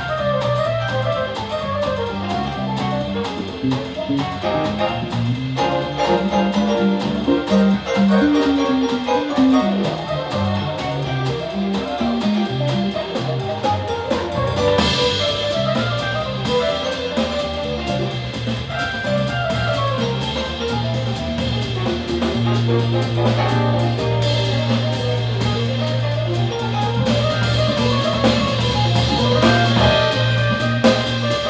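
Jazz played live on a piano accordion with electric guitar, bass and drum kit, the accordion running quick melodic lines over the band. A low note is held steadily through the last third.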